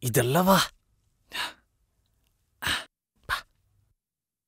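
A man's voice calls out a drawn-out "vaa" ("come"), followed by three short, breathy sighs: one about a second and a half in and two close together near the end.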